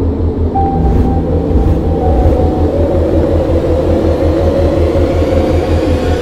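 Truck engine rumbling loudly, a steady low throb with a faint whine over it in the first two seconds.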